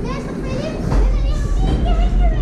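Several children's voices chattering and calling out over one another, over a steady low rumble.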